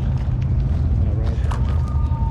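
Wind buffeting a camera microphone outdoors: a heavy, uneven low rumble, with a faint voice in the background and a thin steady tone starting about a second and a half in.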